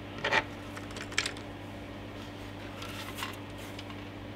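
A few short clicks and knocks of hard plastic and small metal parts being handled during a computer teardown: one near the start, one about a second in and a fainter one about three seconds in, over a steady low electrical hum.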